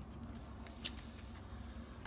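Faint ticks and rustles of a stack of baseball trading cards being picked up and handled, with one sharper tick a little under a second in.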